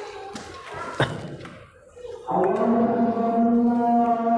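A thump about a second in, then a man's voice begins the Isha call to prayer (adhan) about two seconds in, holding one long, steady sung note.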